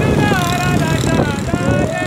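A high voice singing in long, wavering held notes over the running of motorcycle engines and wind rush.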